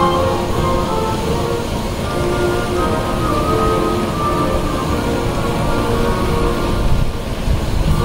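A national anthem played as instrumental music over loudspeakers, with long held notes and a steady rushing noise underneath.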